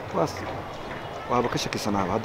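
Speech: a person talking, with a short word just after the start and more talk from about a second and a half in.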